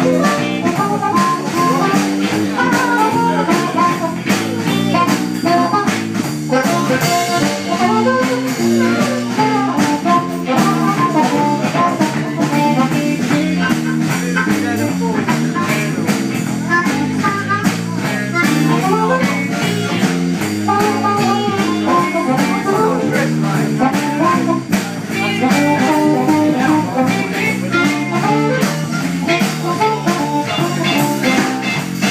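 Live blues band playing an instrumental passage: a harmonica, cupped against a vocal microphone and amplified, plays over guitar, electric bass and drums with a steady beat.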